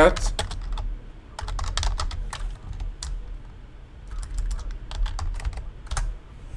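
Computer keyboard typing: keystrokes in short irregular runs with pauses between them, as a terminal command is typed out.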